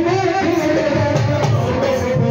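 A man singing a song into a microphone, accompanied by an electronic keyboard, over a repeating low beat.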